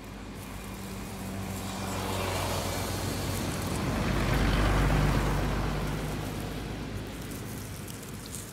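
A motor vehicle passing by: engine and road noise swells to its loudest about five seconds in, then fades away.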